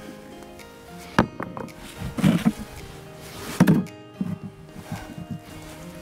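Stones knocking as rocks are lifted and set down, with a sharp knock about a second in and a louder one just past halfway, over soft background music.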